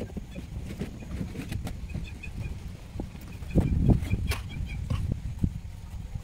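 Trowel taps and scrapes of cement rendering work on a concrete drain wall: scattered short knocks, with a louder clatter a little after halfway.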